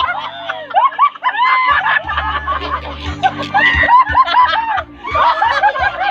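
Several people laughing loudly together in repeated short bursts, with more than one voice at a time.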